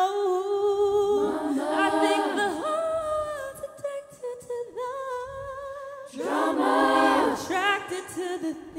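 All-female a cappella group singing without instruments: one voice holds a note at the start, then the group's sustained chords swell in twice, about a second in and about six seconds in.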